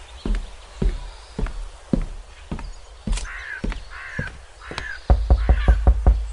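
Footsteps at a steady walk, a little under two steps a second, while a crow caws several times. Near the end comes a fast run of loud knocks on a door, the loudest sound here.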